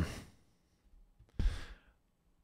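A spoken 'um' trails off into near silence, then about one and a half seconds in a man takes a single short breath or sighs into a close microphone.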